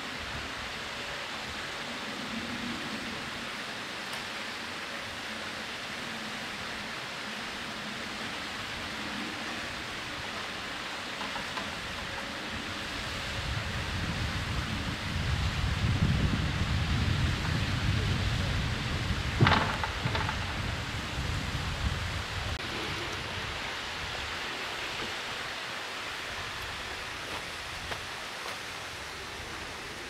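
Steady outdoor hiss, with a low rumble that builds through the middle as a wooden canal lock gate is pushed shut by its balance beam, and a single sharp knock about two-thirds of the way through.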